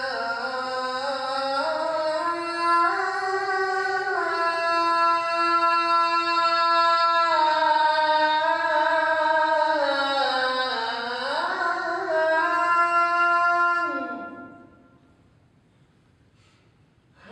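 Solo voice of a muezzin chanting the Islamic call to prayer (adhan), in long held notes that bend and glide from one pitch to the next. The phrase dies away about fourteen seconds in.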